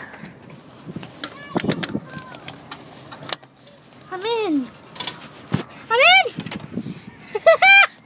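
A boy's short, high-pitched wordless vocal sounds: a falling call about four seconds in, another around six seconds, and quick laughing yelps near the end. A few knocks and clicks from handling come in between.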